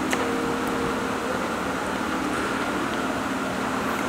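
Steady mechanical hum of room background noise, with a faint click of cutlery just after the start.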